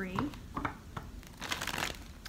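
Tarot cards being handled: a few light clicks, then a brief papery rustle near the end.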